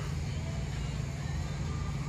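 Steady low outdoor background rumble, like traffic or wind on the microphone, with no clear single event.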